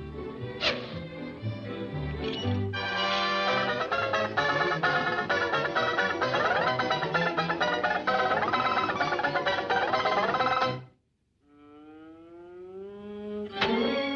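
Cartoon score music with a fast banjo solo that cuts off abruptly about eleven seconds in. After a short silence a single held note rises in pitch.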